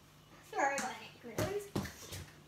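A young girl's brief wordless vocal sound, then two sharp knocks in the second half, the handling noise of hands close to the phone's microphone.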